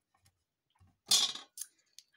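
A short rustle of paper and card being handled about a second in, with a smaller one just after, in otherwise near-quiet.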